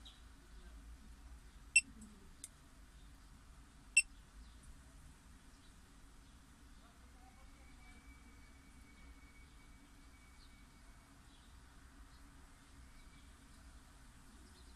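Two short electronic beeps about two seconds apart, with a faint click between them, over a low steady hum.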